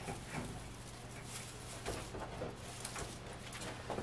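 Faint rustling and light scattered taps of an artificial pine wreath being hung on a door hook and shifted against the door, over a low steady hum.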